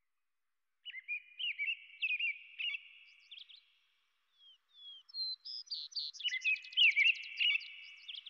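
American robin and vesper sparrow singing: short warbled whistled phrases starting about a second in, a brief pause, then a fast trill of quick repeated notes overlapping further phrases in the second half.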